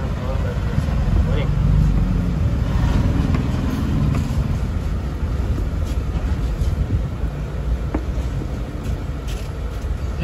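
Steady low rumble of motor vehicles running close by, swelling for a few seconds in the first half, with a few faint clicks near the end.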